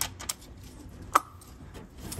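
A handful of small metallic clicks and taps as a Pertronix distributor is turned and worked down into an MGB engine, its rotor being rotated until the offset drive engages, with one sharper click with a brief ring about a second in.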